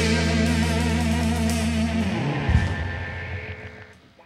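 A rock band's closing chord, led by electric guitar, held and ringing, then dying away over the last two seconds as the song ends.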